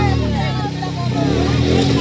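Several women's voices overlapping, high and wavering, over a steady low drone.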